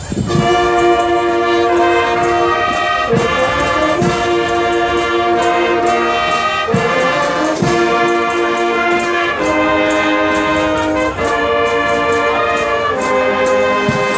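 Brass marching band (trumpets, trombones and low brass) playing loud, sustained chords together under a conductor. The band comes in sharply at the start and moves from chord to chord every second or two, with a few brief breaks.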